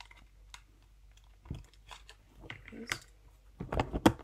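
Fingers tapping and clicking on a phone in irregular light taps, busier and louder near the end.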